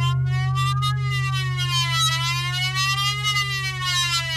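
Wailing siren sound whose pitch rises and falls about once every two seconds, over a steady low hum.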